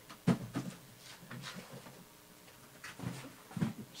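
Handling noises: a sharp knock about a quarter second in, then a few more knocks and scrapes, with a word or two muttered among them.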